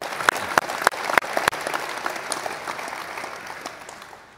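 Audience applause, with one pair of hands close by clapping loudly about three times a second through the first second and a half; the applause then thins and dies away near the end.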